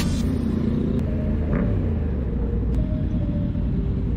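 Yamaha MT-07 motorcycle engine running steadily under way, mixed with the low rumble of wind on the bike-mounted action camera.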